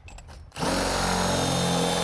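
Cordless drill running steadily at one speed, boring a 5/8-inch hole through vinyl siding; it starts up about half a second in after a few light clicks.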